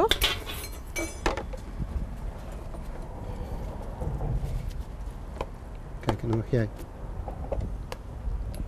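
Metal serving spoons and utensils clicking and scraping against a wok, a glass bowl and plates as food is dished up, over a steady low rumble in the background.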